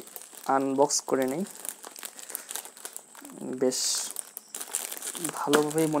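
Plastic parcel wrapping crinkling and rustling as hands pull it open, with a short louder rustle about four seconds in.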